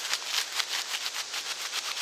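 Dry tinder (fibrous bark, grass and pine needles) being rubbed and shredded between the hands. It makes a rapid, even, crackling rustle.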